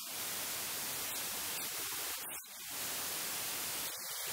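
Steady static hiss across the whole range, with one brief dip a little past halfway; no clear speech stands out of it.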